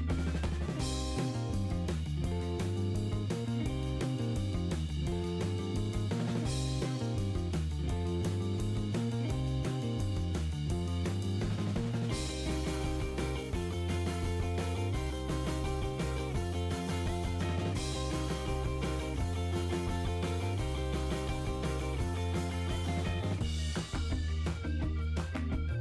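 Background music with a drum kit beat and a bass line. The arrangement shifts about halfway through.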